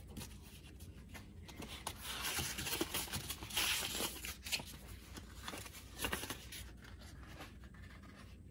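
Faint, irregular scratchy rubbing and paper rustling from a sheet of 2000-grit wet/dry sandpaper being handled and worked against the plastic engine cover, loudest in the middle, with a few light clicks.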